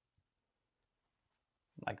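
Near silence with two faint, short clicks in the first second from a marker on a whiteboard as writing finishes, then a man's voice says a word near the end.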